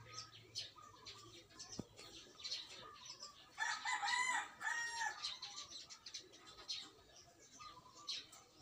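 A rooster crows once about halfway through, a crow of three or four drawn-out syllables, and it is the loudest sound heard. Small birds chirp faintly and briefly throughout.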